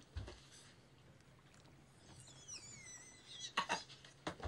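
Quiet cabin room tone with a thin, high squeak that falls in pitch in the middle, then a man's short bursts of laughter near the end.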